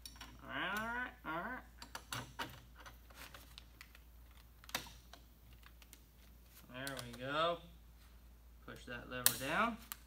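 Small metal clicks and clacks of an SKS rifle's parts being fitted by hand during reassembly, with a sharp snap near the end. In three short stretches a man's voice makes wordless sounds.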